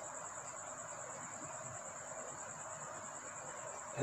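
Steady, high-pitched trill of crickets continuing without a break, over a faint even background hiss.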